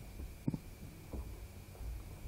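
A pause in speech filled by the low, steady hum of a handheld microphone and PA system, with a soft thump about half a second in.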